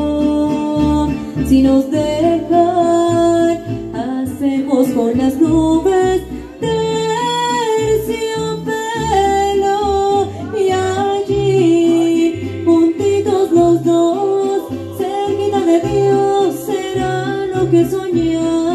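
Live mariachi music: a woman singing into a microphone over strummed guitars, with a guitarrón's deep bass notes on a regular beat.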